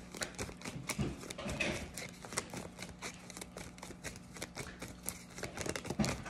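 A tarot deck being shuffled by hand, cards pulled off the pack from one hand to the other: a quick, irregular run of small card flicks and taps, several a second.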